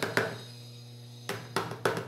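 A plastic PET bottle full of thickening homemade soap mixture being shaken by hand, giving quick knocks and thuds. One comes just after the start, then there is a pause, and a second run of about three or four a second follows past the middle.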